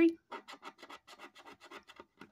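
Scratching tool scraping the coating off a scratch-off lottery ticket in quick short strokes, about seven a second.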